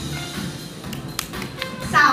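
Background music playing over a hall's sound system, with a few sharp taps in the second half.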